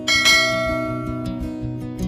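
A single bright bell chime, a notification-style sound effect, struck once near the start and ringing out as it fades. It plays over soft background music.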